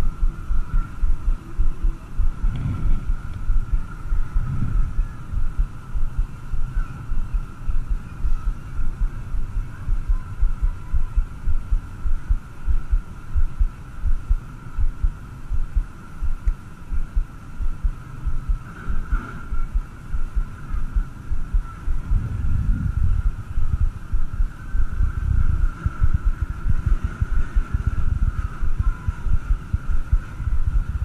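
Wind buffeting an action camera's microphone: an uneven low rumble with frequent thumps. Behind it runs a steady high-pitched hum.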